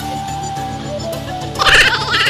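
Background music with steady held notes. About one and a half seconds in, a loud, high, wavering cry breaks in over it: a woman's excited shriek.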